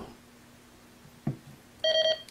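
Uniden SDS100 handheld scanner giving a short electronic key beep near the end, after more than a second of quiet.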